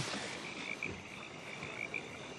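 A chorus of frogs calling in the background: short, high calls repeated several times a second, steady and without a break.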